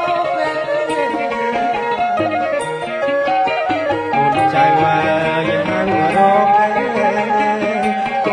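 Khmer traditional (pleng boran) wedding music played live by a band, a melody sliding up and down in pitch.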